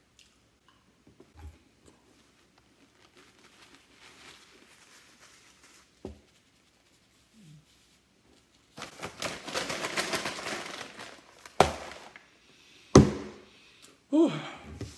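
Faint chewing of a last bite of popcorn chicken. Then a few seconds of paper napkin rustling and crumpling as hands are wiped, with two sharp knocks near the end.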